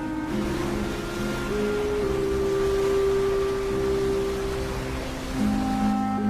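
Slow film score of long held notes that change pitch every second or two, over a steady wash of sea noise.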